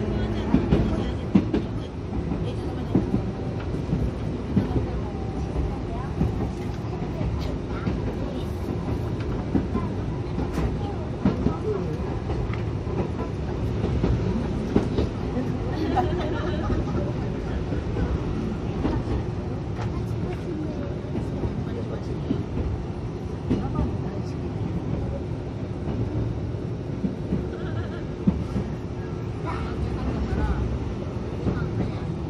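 Interior running noise of a Toden Arakawa Line 7000-series tram (car 7001) in motion: a steady low rumble from the motors and wheels with scattered clicks and knocks from the wheels on the rails.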